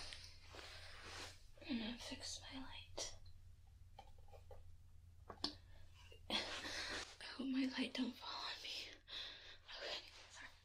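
A person whispering softly in short phrases, with a few brief clicks between them.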